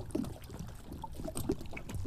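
Small waves lapping and trickling at a lake's edge, under a steady low rumble of wind on the microphone.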